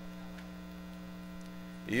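Steady electrical mains hum on the podium microphone's feed, a low even buzz. A man's voice begins right at the end.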